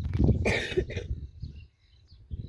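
A person coughing or clearing their throat: one short, harsh burst just after the start that fades out over about a second.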